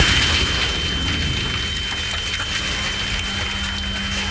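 Aftermath of a bomb blast in a computer-generated recreation: a loud, steady rush of noise from dust and debris, with a thin steady high tone held over it and a lower steady hum joining about halfway through.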